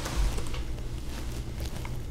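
Low steady hum with faint background hiss, with no distinct sound event.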